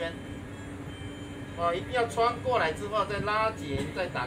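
Mostly speech: a voice talking through the second half, over a steady low hum from the tour boat.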